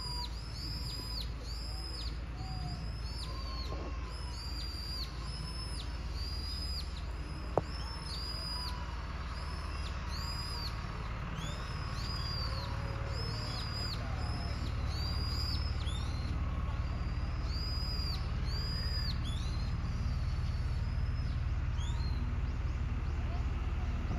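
A small bird calling over and over, short high arched chirps about twice a second, over a low steady rumble. A single sharp click about seven and a half seconds in.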